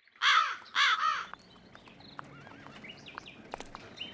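Animal calls: three loud, short wavering cries within the first second or so, then a few fainter ones around two seconds in, with scattered light clicks.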